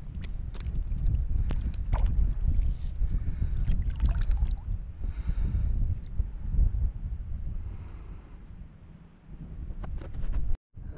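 Wind rumbling on the microphone as a low, uneven buffeting, with a few light clicks and knocks; it eases off near the end.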